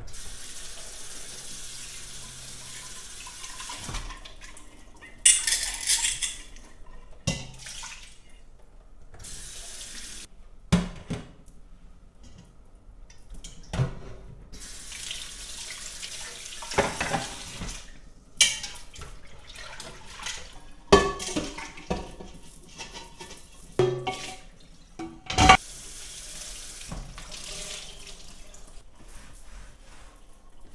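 Kitchen faucet running on and off into a stainless steel sink while dishes are washed. About ten sharp knocks and clatters of a jar and a bowl against the sink are scattered through the running water.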